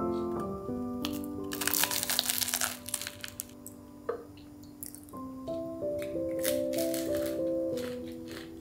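Soft keyboard music with steady held notes. Over it, a crisp toasted baguette is bitten and chewed with a dry crunching, loudest about two seconds in and again about seven seconds in.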